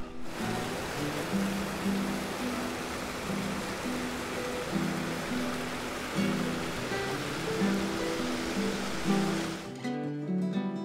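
Background guitar music over the steady rush of water from a rocky river cascade. The water sound cuts off suddenly near the end, leaving only the music.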